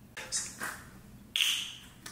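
Plastic protein-shake bottle being handled and its screw cap twisted open, with one short, sudden rasp a little past halfway through.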